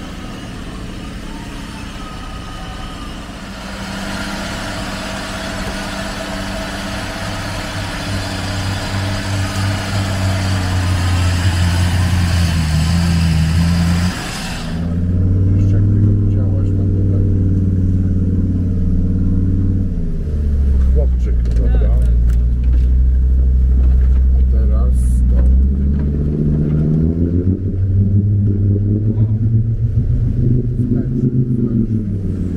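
Off-road 4x4 engines labouring through deep water and mud. For the first half an engine drones steadily under a hiss. Then, about halfway in, the sound cuts to an engine heard close up from the vehicle itself, its revs rising and falling as it pushes along a flooded track, dropping low for a while and revving up again near the end.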